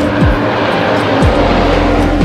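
Background electronic music: held steady tones over a deep bass note that drops sharply in pitch about once a second.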